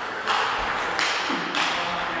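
Table tennis balls clicking off bats and tables, three sharp taps in quick succession, ringing in a large sports hall where play goes on at many tables.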